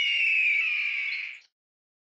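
A bird of prey's screech: one long, high cry that falls slightly in pitch and fades out about a second and a half in.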